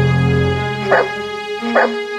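Two short dog barks, a little under a second apart, over background music.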